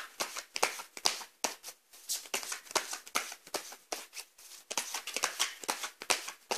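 A deck of tarot cards shuffled by hand: a continuous run of quick, irregular papery riffles and taps.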